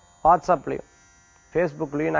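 A man speaking Tamil, with a short pause in the middle. A faint, steady, high electrical buzz runs underneath.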